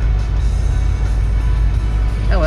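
Music with guitar playing on the radio inside a moving car, over a steady low rumble from the car's engine and road.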